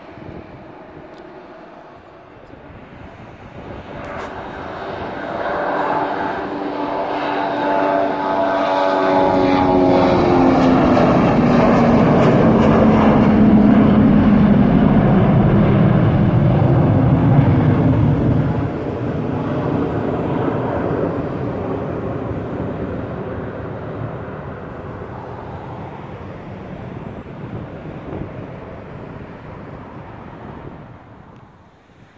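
Boeing 737-300 jet airliner taking off and climbing past: the engine noise swells to a peak in the middle, with tones sliding down in pitch as it goes by, then fades slowly as it climbs away.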